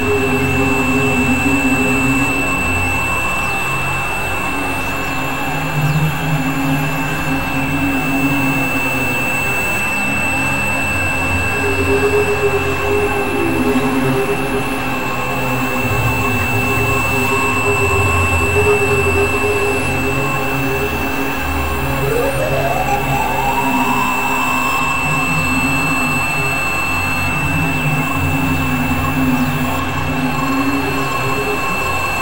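Dense experimental noise music: several tracks layered into a droning wall of sound, with a steady high whine over shifting low drones, and a tone that glides upward about three quarters of the way through.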